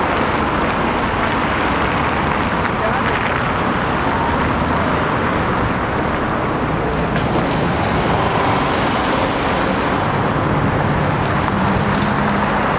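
Steady, busy city-street traffic: cars and a trolleybus driving past.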